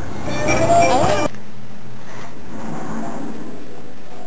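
A woman laughs over the low rumble of a moving car and wind through its open window. About a second in, it all cuts off abruptly to a faint, steady room hiss.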